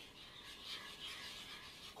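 Faint rubbing of a spoon stirring oatmeal in a saucepan, soft and irregular.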